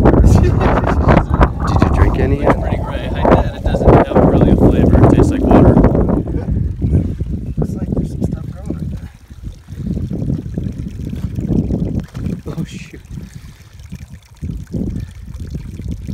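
Wind buffeting the microphone as a heavy rumble, loudest for about the first six seconds and then easing off, with muffled voices under it.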